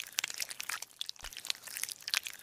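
Crunchy crackling sound effect: a dense, irregular run of sharp clicks and crackles, dubbed as a knife cutting and scraping through seed-like lumps.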